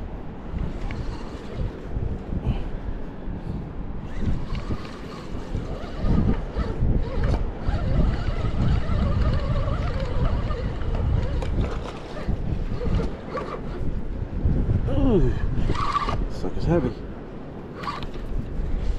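Wind buffeting the microphone as a steady low rumble that rises and falls, with a man's voice briefly near the end.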